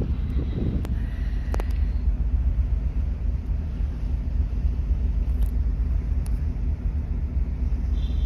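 Steady low rumble on a cruise ship's open deck at sea: strong wind on the microphone over the ship's running noise and rushing wake, with a couple of faint clicks in the first two seconds.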